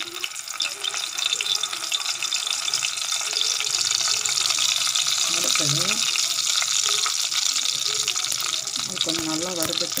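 Hot oil sizzling and crackling steadily in a pan as dried red chillies fry in it.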